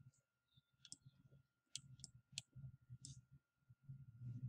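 Near silence broken by about five faint, sharp clicks, one about a second in and the rest spread through the middle: the clicks of pen or mouse input while digits are handwritten on a computer screen.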